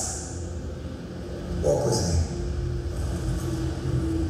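Film soundtrack playing over an auditorium's speakers: a low, steady rumbling score with a held tone, and a brief louder swell about two seconds in.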